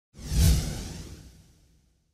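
A single whoosh sound effect that swells quickly, peaks about half a second in and fades away over the next second and a half.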